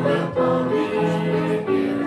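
A small group of men and women singing a gospel song together in harmony, with held notes.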